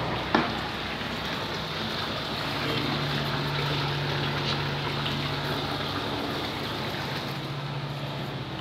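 Steady splashing of a small fountain jet falling into a terrace water tank, with a single sharp click just after the start and a low hum through the middle.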